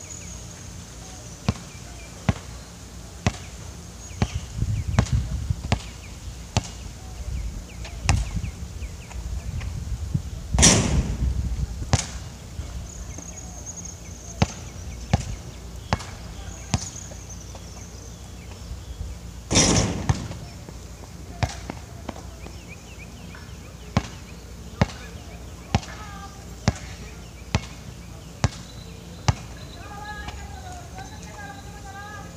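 A basketball bouncing on an outdoor hard court, dribbled in a steady run of sharp bounces under a second apart. Two much louder bangs come about a third and two thirds of the way through.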